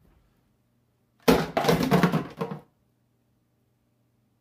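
Plastic dishes dumped into a stainless steel sink, clattering loudly for about a second and a half.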